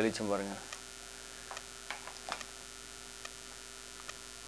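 A man's voice for the first half-second, then a steady faint hiss with a low electrical hum and a few faint clicks.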